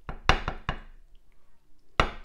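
A metal cooking pot knocking against a ceramic plate as soup is tipped out of it: four quick knocks within the first second and one more at the end.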